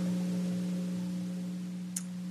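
Steady low electrical hum in the recording's sound system, one pitch with a few fainter overtones, and a short click near the end.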